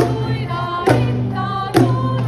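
Children's choir singing a song in unison with instrumental accompaniment, held notes changing with a struck accent about once a second.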